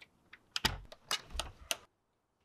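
A door lock being worked by hand, with a quick run of about half a dozen sharp metallic clicks and a couple of dull knocks, stopping shortly before the end.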